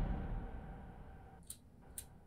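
Quiet room: a sound dies away in the first second, then two short clicks come about half a second apart near the end, from operating the computer.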